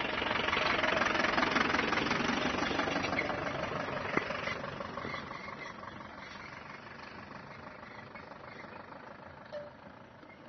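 Tata Sumo SUV's diesel engine running as it drives past close by and pulls away, loudest in the first two seconds and fading over the next few. A single sharp tick about four seconds in.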